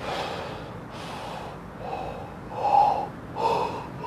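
A person taking a series of quick, forceful gulps of air, as in an air-gulping breathing exercise: about five gasps, each roughly half a second long, the later ones louder and with some voice in them.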